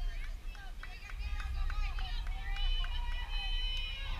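Distant high-pitched voices of young players calling out and chattering across a softball field, several overlapping, with a steady low rumble underneath.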